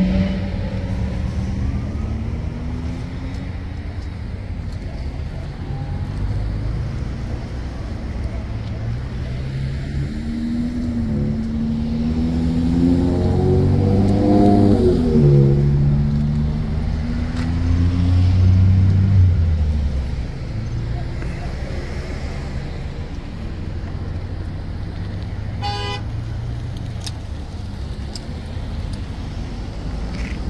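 Road traffic passing on the highway: vehicle engine and tyre noise that swells and fades, loudest twice in the middle as vehicles go by with a drop in pitch.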